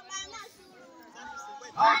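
Scattered, fairly quiet voices of girls and children talking, then a loud voice starts near the end.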